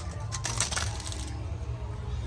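Kite line being handled on a hand-held line can: a scatter of quick clicks and light rustling as the line and can are worked by hand, over a steady low hum.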